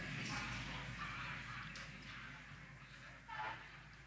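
Faint, even background noise that slowly fades, with a brief faint sound about three and a half seconds in.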